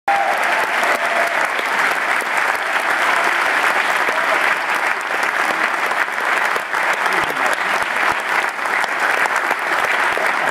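Audience applauding steadily, with some voices mixed in.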